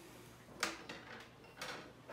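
Two light clicks about a second apart as wire coat hangers are handled and set down on the countertop.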